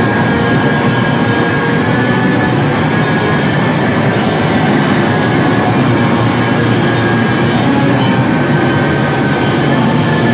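Hardcore band playing live: distorted electric guitar and bass over a drum kit, with a steady run of cymbal hits, loud and continuous throughout.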